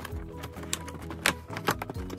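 Background music with held notes, over a few irregular sharp clicks and crackles of a doll box's cardboard and plastic packaging being handled and pulled open.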